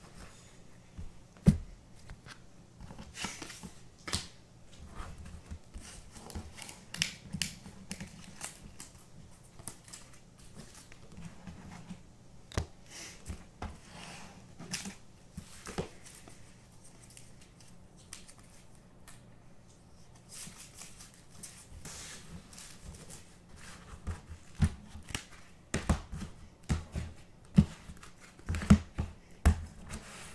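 Baseball trading cards handled by hand: sliding and flicking through a pack, with scattered sharp clicks and taps as cards are set down on a table. The sharpest tap comes about a second and a half in, and the taps come closer together near the end.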